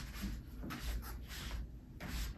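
A spinning poi whooshing through the air in a steady rhythm of about two swishes a second, with low soft thumps underneath as the spinner turns.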